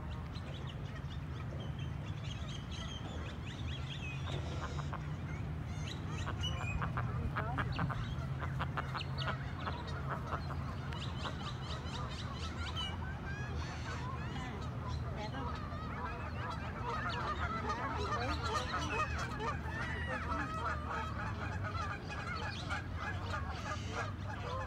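A flock of white Pekin ducks quacking over and over, the calls thickest in the second half, over a steady low rumble.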